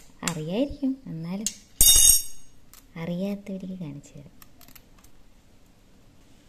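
A steel spoon clinks once, sharply, about two seconds in, with a short high metallic ring, as it is handled over a steel tumbler while an egg is being cracked.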